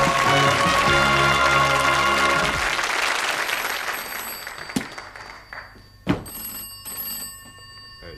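Theme music of the part-two title card, fading out over the first few seconds. Then a desk telephone bell rings in short spells, with a couple of sharp knocks.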